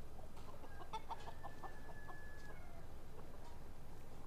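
Chickens clucking: a quick run of short clucks, about eight in a row, between about one and two and a half seconds in, with a thin held high note over part of it.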